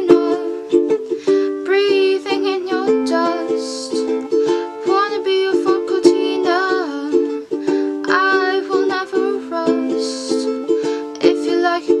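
A strummed ukulele with a woman singing over it.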